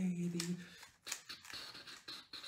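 A man's voice holds a low note that stops under a second in, followed by several quick plastic clicks and rattles as the layers of a 3x3 Rubik's cube are turned in the hands.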